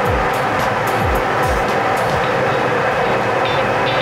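Lottery draw machine mixing its numbered balls: a steady mechanical running noise with the balls clattering inside the clear drum.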